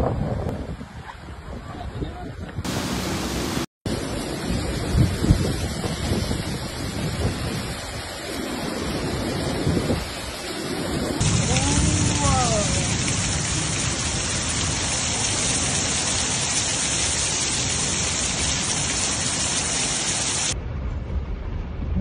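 Heavy rain with wind on a phone microphone: a steady rushing noise that changes abruptly several times as one clip cuts to the next, with a brief dropout a few seconds in. A short wavering pitched sound comes a little past the middle.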